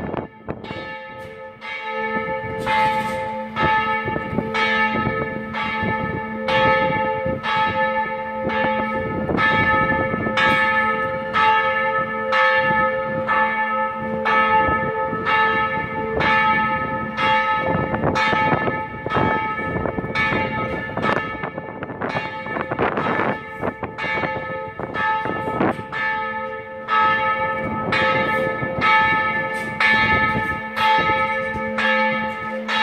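Church bell of the cathedral's bell tower ringing in steady, regular strokes, about one and a half a second, each stroke ringing on into the next.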